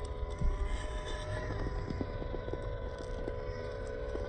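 A scale RC crawler's small electric motor and gearbox whining steadily as it climbs, the pitch shifting a little partway through, with scattered light ticks from the tyres and chassis on rock. Low wind rumble on the microphone.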